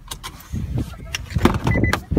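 Someone getting out of a Nissan LEAF: the door unlatches with a few clicks over low rumbling handling and wind noise on the microphone. A short electronic beep sounds near the end.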